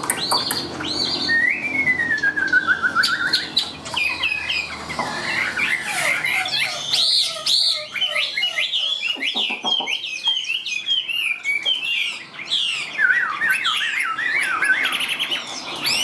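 Chinese hwamei (melodious laughingthrush) singing a loud, continuous song of varied whistled phrases: a long falling whistle about a second and a half in, then quick runs of constantly changing notes.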